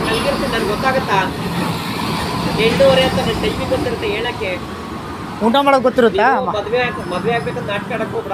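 People talking in Kannada, with the loudest burst of talk a little past halfway, over a steady low background hum.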